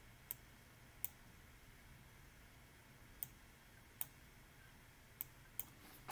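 Six short, isolated computer mouse clicks at irregular intervals over faint room tone.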